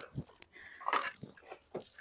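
Quiet eating sounds as people eat chicken curry with their hands: chewing and lip smacks, with scattered soft clicks.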